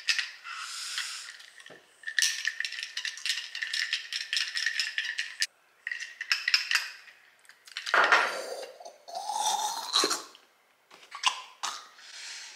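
A spoon stirring coffee in a glass mug, clinking quickly and steadily against the glass for a few seconds, then a few more scattered clinks. A louder, lower sound comes about eight seconds in.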